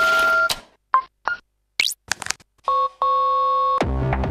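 Electronic ATM keypad beeps: two short beeps, a quick rising chirp and a few clicks, then a steady two-tone beep lasting about a second. Music fades out at the start and comes back in near the end.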